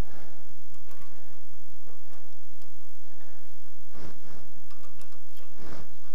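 Light metallic clicks and taps as set screws are loosened with a hex key and a steel boring bar is handled in a hollowing system's tool holder, with a couple of sharper knocks about four seconds in and near the end. A steady low hum runs underneath.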